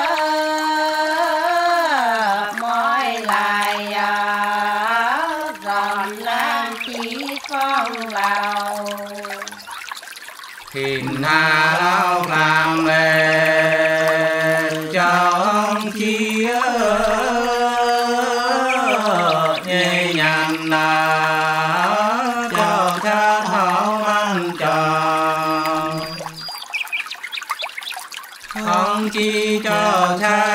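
Unaccompanied soóng cọ folk singing of the Sán Chỉ people: long held notes that waver and slide slowly between pitches, sung in long phrases. There is a short break a little over a third of the way in and another near the end.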